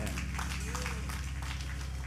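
Congregation clapping and calling out over a held low keyboard chord.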